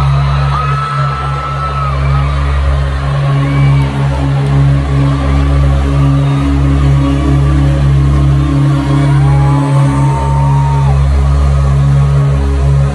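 Concert intro music: a low, sustained electronic drone that holds steady, with a further tone joining about three seconds in. An arena crowd is screaming over it, with a couple of long, held high screams.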